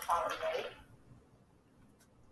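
A brief muffled voice, under a second long, followed by quiet room tone.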